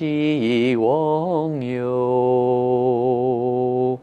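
A man chanting a mantra in a low, sung voice. The pitch moves over the first syllables, then settles about a second and a half in into one long held note.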